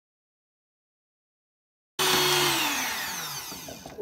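Silence for the first half, then an electric hand mixer's motor whine cuts in suddenly about halfway and falls steadily in pitch while fading as the motor winds down. The aquafaba has been whipped to stiff peaks and the mixer has been switched off.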